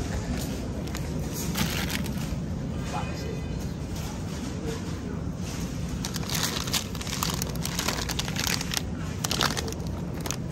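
Supermarket background noise with indistinct voices, and in the second half a run of crackling rustles as plastic-labelled mesh bags of avocados are handled.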